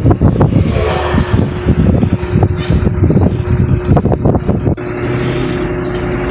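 Table tennis rally: the hollow clicks of a celluloid ball struck by paddles and bouncing on the table, a few a second and irregular, stopping a little before the end as the point finishes. A steady low hum runs underneath.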